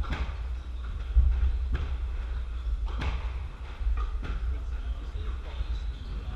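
Squash rally: a squash ball smacking off rackets and the court walls in several sharp hits about a second apart, with court shoes squeaking on the wooden floor in between.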